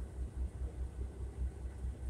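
Low, throbbing rumble of a semi-truck's engine idling, heard inside the cab.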